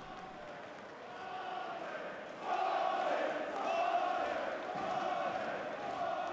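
Boxing arena crowd chanting and shouting, fading in and growing louder about two and a half seconds in.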